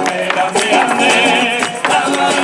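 Live music played by a small band: voices singing over a steady beat of sharp percussion strikes.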